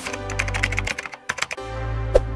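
Keyboard-typing sound effect, a quick run of clicks, over background electronic music with a deep bass note that drops out and comes back.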